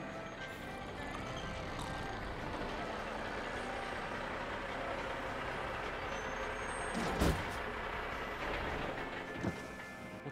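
Truck-stop sound effects of big-rig diesel trucks running over background music, with a loud, short hiss of air brakes about seven seconds in.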